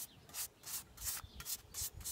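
Paintbrush bristles scrubbing teak oil onto the weathered wood of a teak garden bench, in quick back-and-forth strokes about four a second.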